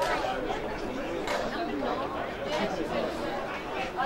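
Several spectators' voices chatting and overlapping at the boundary, no single voice clear enough to make out words.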